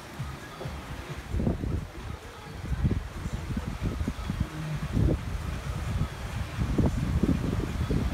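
Wind buffeting the phone's microphone in irregular low rumbling gusts, growing stronger toward the end.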